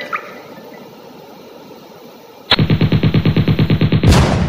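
Background music ends at the start, then after a quiet stretch a loud burst of rapid machine-gun fire, about eleven shots a second, starts suddenly about two and a half seconds in: an edited-in gunfire sound effect.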